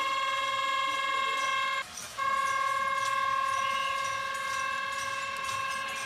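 A horn blown in two long, steady notes of the same high pitch, the first about two seconds long and the second about four, with a short break between them.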